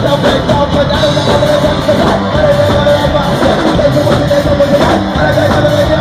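Rock band playing live and loud: electric guitar over a driving drum kit.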